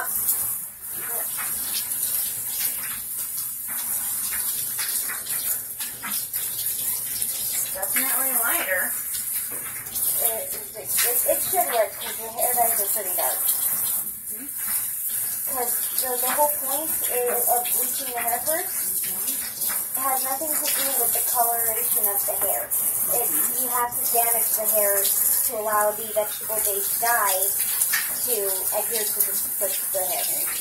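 Water from a handheld shower sprayer running over hair into a bathtub, a steady hiss of spray throughout, as bleached hair is rinsed. Voices talk over it for much of the time.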